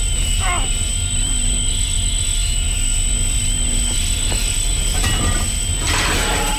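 Film soundtrack sound design: a deep, steady rumble under a high, slightly wavering ringing tone.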